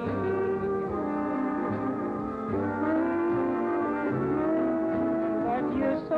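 Jazz horn section of saxophones and trumpet holding long, sustained chords in a slow blues over a low bass line, with a higher note joining about four and a half seconds in.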